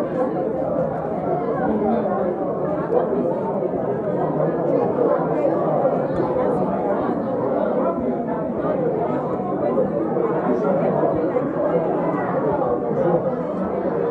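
Many people chattering at once in a busy room, a steady hubbub of overlapping voices with no single voice standing out.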